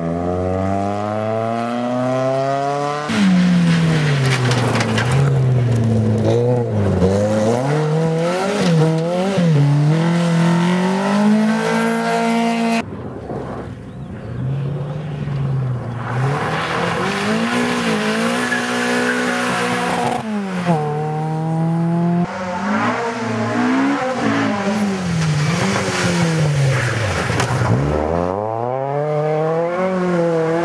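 Rally cars, VW Golfs among them, driven flat out in a run of short clips. The engines rev high, their pitch climbing through each gear and dropping back at every shift or lift, with abrupt jumps in sound where the clips cut.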